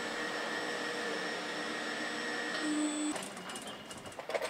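Electric-hydraulic power units of SEFAC S3 heavy-duty mobile column lifts running with a steady hum and whine, then cutting off abruptly about three seconds in.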